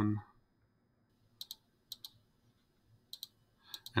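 Three computer mouse clicks, about half a second and then a second apart, each a quick pair of ticks, on an otherwise quiet desk.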